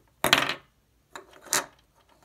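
Small magnets clacking together: a quick run of sharp clicks about a quarter second in, then two lighter clicks around a second and a half.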